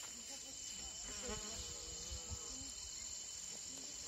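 Steady, high-pitched insect chorus, with faint distant voices about a second in.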